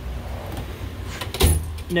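Snap-on roll cart drawer full of sockets rolling shut on its steel slides, the tools inside rattling, then shutting with a thump about one and a half seconds in.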